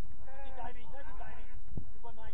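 Players' shouts and calls across a football pitch, several voices overlapping, heard over a steady low rumble.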